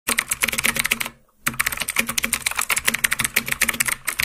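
Computer keyboard typing sound effect: a fast run of key clicks with a brief pause about a second in.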